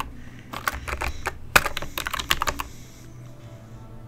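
Typing on a computer keyboard: a quick, uneven run of keystrokes that stops about two-thirds of the way through.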